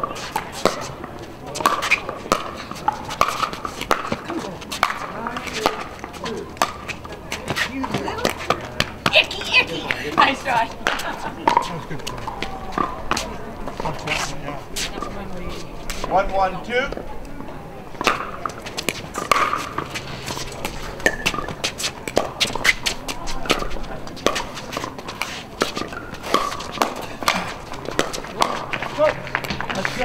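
Pickleball paddles striking the hard plastic ball: many sharp pops at irregular intervals, from this and neighbouring courts, over indistinct voices.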